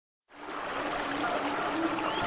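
Running water of a waterfall splashing into a pool, fading in from silence within the first half second and then holding steady, with a faint steady low tone beneath it.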